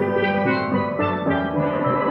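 Steel band playing: steel pans struck with rubber-tipped sticks in a quick succession of ringing notes.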